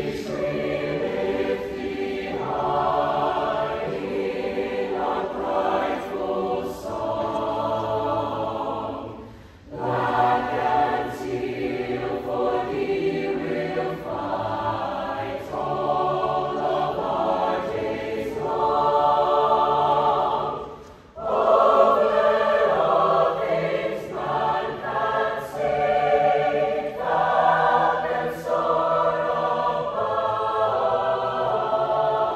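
Mixed-voice choir singing sustained choral phrases, with two brief breaks between phrases, about nine and twenty-one seconds in.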